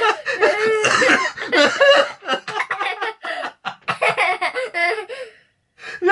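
A man and a young boy laughing hard together in rapid repeated bursts, the laughter unable to stop, with a short break about five and a half seconds in.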